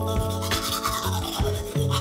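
Teeth being brushed with a toothbrush: quick, irregular scrubbing strokes, over soft background music.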